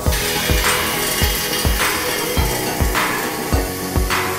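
Background music with a steady, regular beat.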